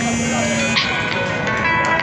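Street traffic with a vehicle horn: a steady low horn note for the first second, then higher musical tones near the end, over traffic noise and background voices.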